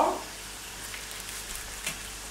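Crostoli pastry strips deep-frying in hot vegetable oil in an electric frying pan, a steady sizzle with a light click near the end.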